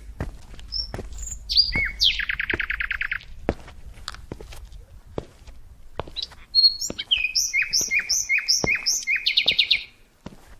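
Songbird singing: a fast trill of rapid notes about two seconds in, then a phrase of evenly repeated downslurred notes that runs into another fast trill near the end, with scattered short clicks between.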